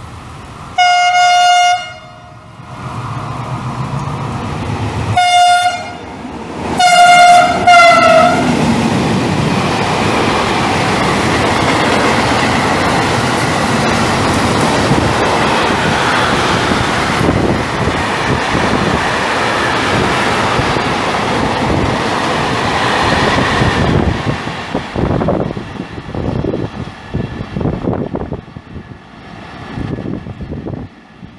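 Freight train locomotive horn sounded as a greeting: one blast of about a second, then a short toot and two more blasts in quick succession. The train's wagons then rumble past at speed for about fifteen seconds, and the noise fades away near the end.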